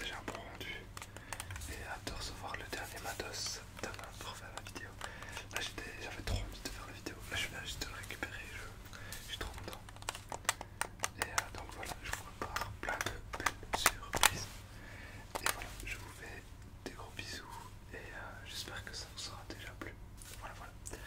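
Soft whispering close to the microphone, with scattered sharp clicks, several close together in the middle of the stretch.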